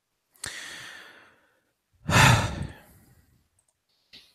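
A man breathes in about half a second in, then lets out a long, loud sigh into the microphone about two seconds in.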